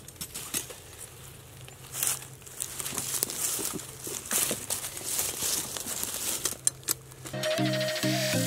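Dry leaf litter rustling and crunching in irregular bursts, with a few light clicks, as a trapped raccoon is handled and pulled from the trap. Electronic dance music comes in near the end.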